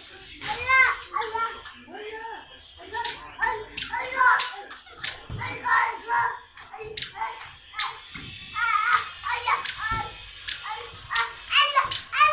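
A toddler's high-pitched babbling vocal sounds, with no clear words, broken by many short sharp knocks and slaps from balloons being batted and hitting the floor.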